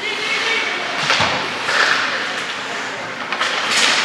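Ice hockey play: skate blades scraping and carving on the rink ice, with stick and puck clacks, a thud against the boards about a second in, and sharp skate-stop hisses near the end.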